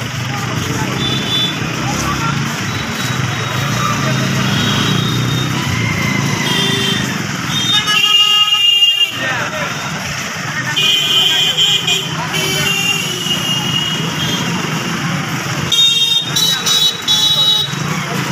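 Many voices talking at once against steady outdoor noise. About halfway through comes a brief high tone, and more high tones follow near the end.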